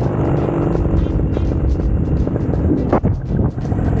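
Paramotor engine and propeller running steadily in flight as a loud, continuous drone, dipping briefly about three seconds in.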